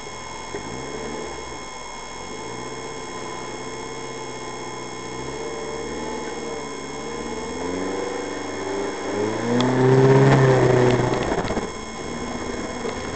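A 4x4's engine under load, recorded from inside the cab, rising in pitch and dropping back several times as the vehicle drives off-road. It is loudest and highest about ten seconds in, then falls away sharply just before the end.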